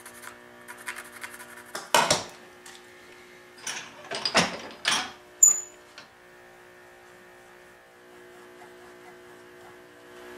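Pencil scratching across wood as cut lines are marked out along a steel rule: one stroke about two seconds in, then a quick run of strokes shortly after. A sharp metallic clink with a brief high ring follows about halfway through, then only a steady low hum.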